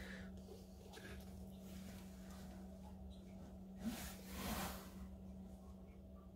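Quiet room tone with a steady low hum, and one short breath about four and a half seconds in.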